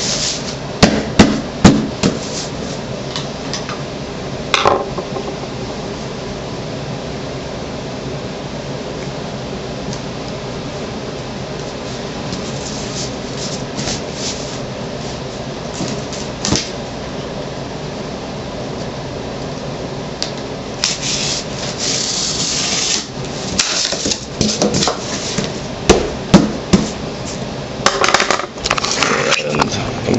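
Cardboard shipping box being handled and its flaps pressed closed: scattered knocks and thumps on the cardboard near the start, then a quieter stretch, then a run of rasping, scraping bursts and knocks in the last third.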